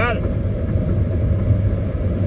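Steady low rumble inside a car cabin with the vehicle running.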